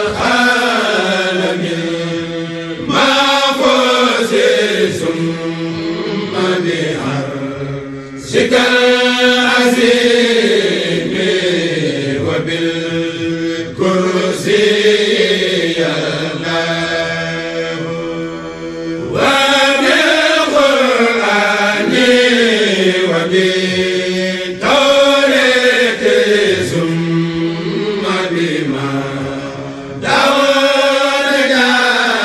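Chanted Arabic devotional poem (a khassida), sung in long gliding melodic phrases of about five or six seconds each, with brief breaks for breath between them.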